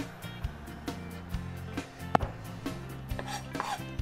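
Irregular light knocks and taps of kitchen items being handled on a countertop, with one sharper knock about two seconds in, over quiet background music.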